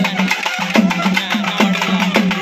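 South Indian festival drums, barrel drums struck with sticks, playing a fast, loud rhythm. Rapid sharp beats run over deep booming strokes that sag in pitch, coming about every half second.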